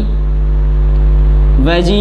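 A loud, steady low hum with a few faint steady tones above it, unbroken through the pause. A man's voice comes back in near the end.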